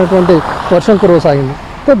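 Speech: a voice narrating the news, with a brief hiss of background noise behind it about half a second in.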